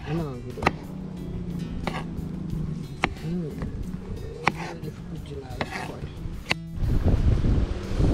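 Kitchen knife chopping okra on a wooden cutting board: about six sharp cuts, roughly one a second. A louder stretch of rumbling noise takes over near the end.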